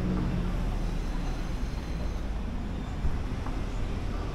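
Steady low rumble of road traffic from the street beside the walkway, with no distinct single event.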